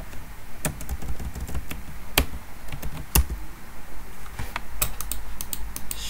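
Keystrokes on a computer keyboard as a short command is typed, irregular clicks with a quicker run of taps near the end, over a steady low hum.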